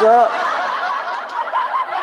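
A man snickering in a high, wavering voice through a close microphone.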